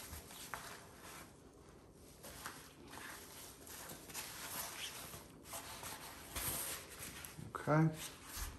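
Paper surgical drape rustling and crinkling as gloved hands unfold it and smooth it flat, in soft irregular rustles with a slightly louder patch near the end.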